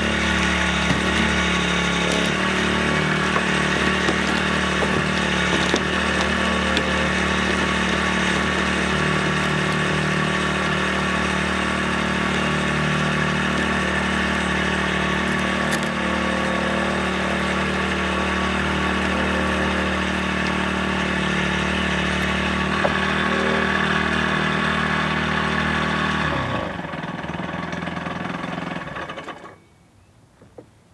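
Small gas engine of a Portable Winch capstan winch running steadily while it hauls a log up onto a trailer by rope. About 26 seconds in the engine slows to a lower pitch, and it cuts off shortly before the end.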